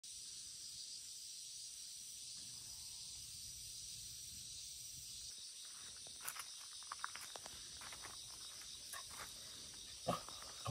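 Steady high-pitched chorus of insects, with a few faint clicks and scuffs in the second half.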